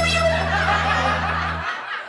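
End of a theme jingle: recorded laughter over a held low synth note that fades and cuts off suddenly near the end.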